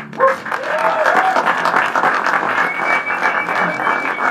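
Small audience applauding and cheering at the end of a song, with a long high whistle through the second half.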